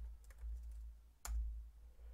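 Computer keyboard keystrokes: a few light key taps, then one sharper keypress a little over a second in, as a spreadsheet formula is finished and entered. A low background rumble runs underneath.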